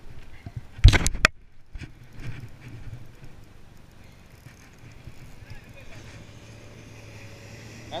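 A quick cluster of sharp knocks about a second in, then from about six seconds a steady low hum of a passing boat's outboard motor.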